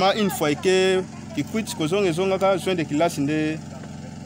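A man speaking; only speech.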